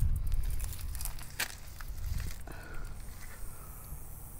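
A few scattered crackles and snaps of dry brush and leaves being stepped on or handled, the clearest one about a second and a half in, over a low rumble that fades early on.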